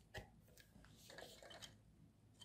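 Faint handling noise: a light click just after the start, then soft scraping and small ticks as a wooden barbecue skewer is slid into a 3D-printed plastic axle tube.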